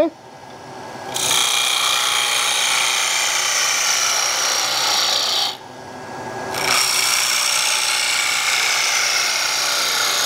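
Turning gouge cutting into a small wooden bowl spinning on a wood lathe, hollowing it out: a steady hiss of wood being cut, in two long cuts with a pause of about a second in the middle when the tool comes off the wood.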